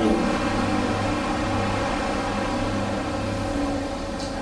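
Steady low hum over a constant noisy background.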